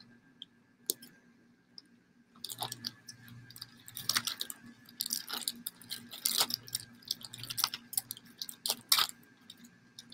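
Clear plastic grain spawn bag crinkling as its neck is twisted shut and a rubber band is wound around it. There is a single click just under a second in, and dense crackling from about two and a half seconds in.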